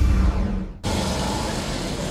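A news theme music sting ends abruptly just under a second in, followed by a steady hum of street ambience with traffic.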